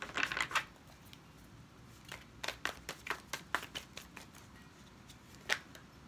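A deck of tarot cards being shuffled and handled by hand: irregular sharp card clicks and short riffs, thickest in the middle, with one louder snap near the end.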